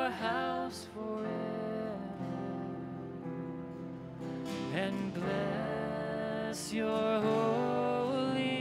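Live worship song: acoustic guitar strumming with keyboard, and voices singing long, held notes in slow phrases.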